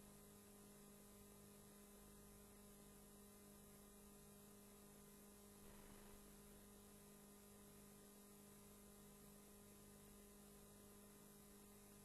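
Near silence: a faint, steady electrical hum on the audio feed.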